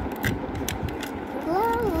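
Light clicks and taps of small plastic toys being handled, about three or four a second, as a doll is set onto a plastic toy toilet. About a second and a half in, a child's voice starts singing "ooh", sliding up and down in pitch.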